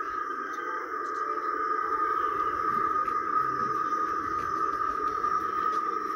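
A steady high-pitched tone held at one pitch throughout, over a lower droning hum, with faint scattered ticks.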